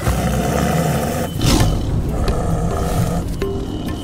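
A lion roaring over a background music score, loudest about a second and a half in.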